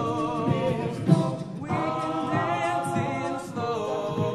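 Men's a cappella group singing close-harmony chords, with a vocal percussionist's low kick-drum thumps beneath them; the loudest thump comes about a second in.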